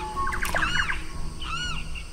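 Jungle-style birdsong: one bird repeats a short rising-and-falling call about once a second, with a rapid chattering burst of calls in the first second.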